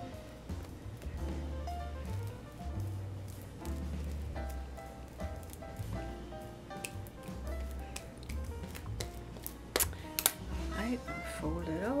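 Background music: a melody of held notes over a pulsing bass line. Two sharp knocks come close together about ten seconds in.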